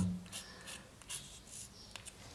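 Chalk writing on a blackboard: about five short, faint scratches and taps as the chalk strokes out a few characters.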